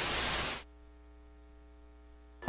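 Television static hiss from a station logo ident, cutting off suddenly about half a second in and leaving a faint steady hum.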